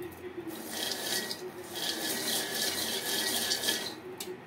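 Peanuts being stirred while dry-roasting in an aluminium pot, the nuts rattling and scraping against the metal in two spells: a short one about half a second in, and a longer one from about two seconds in until just before the end. A steady low hum runs underneath.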